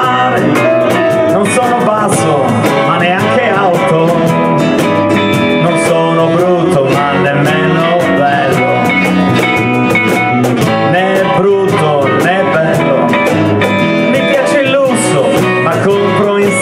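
Live band playing an instrumental passage of a song: guitars, bass and hand percussion keeping a steady beat, with a lead melody line on top.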